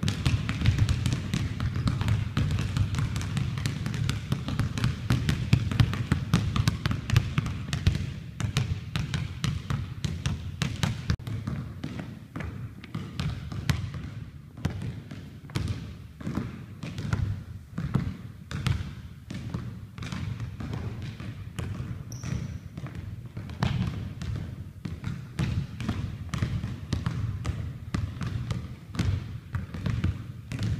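A basketball being dribbled hard on a hardwood gym floor: a steady, rapid run of bounces that goes on without a break.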